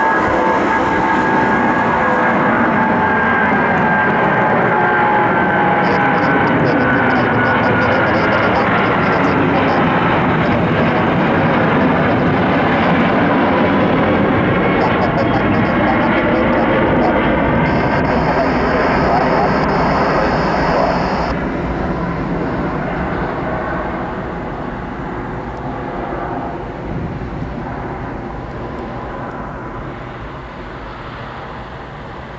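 Twin Rolls-Royce Trent engines of a Boeing 777 at climb power just after takeoff: a loud, steady jet noise with whining fan tones that glide down in pitch as the airliner passes. The noise slowly fades over the last third as the aircraft climbs away.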